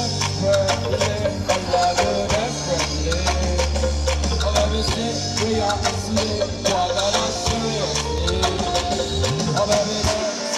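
Live band music: an upbeat song with regular drum hits over a deep, sustained bass line and a wavering melody line above.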